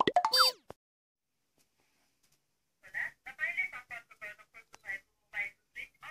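An edited-in comedy sound effect: a quick springy glide of tones climbing steeply in pitch for about half a second. From about three seconds in, a rapid, high-pitched chattering voice follows in short bursts.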